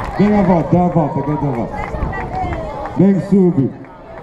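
A voice amplified over loudspeakers, speaking in short phrases, with a burst near the start and another about three seconds in.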